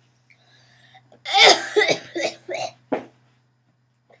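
A boy coughing after a mouthful of onion: one loud cough a little over a second in, then four shorter ones.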